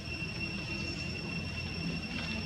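Insects droning steadily in a continuous high-pitched whine, over a low background rumble.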